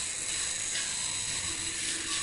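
Steady background hiss with faint high-pitched tones, and light handling noise of the brushless motor's finned aluminium housing being turned over by hand.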